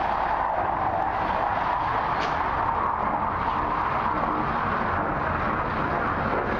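Steady outdoor background noise: a constant, even rushing hum with no distinct events.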